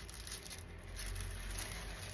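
Faint rustle of clear plastic sleeves as pages of a canvas portfolio are handled and turned, over a low steady room hum.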